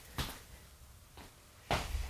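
Brief handling noises: a short click just after the start, a fainter one about a second in, and a louder brief rustle near the end.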